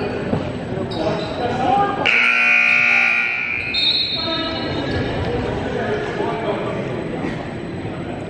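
Gym scoreboard horn sounding once, a steady buzzing tone that starts suddenly about two seconds in and lasts under two seconds, over the chatter of voices in the gym.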